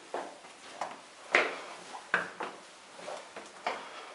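Footsteps climbing stone stairs: a series of sharp shoe steps, roughly two a second and unevenly spaced.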